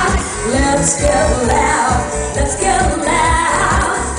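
Live pop music: a singer's voice over a band with a steady beat in the bass, recorded loud in the venue.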